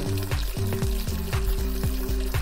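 A subliminal audio bed of steady layered tones, in the manner of Rife frequencies, with falling pitch sweeps about four times a second, over an even hiss.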